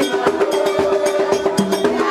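Vodou ceremonial drumming and percussion: quick, dense strokes with a long held sung note over them.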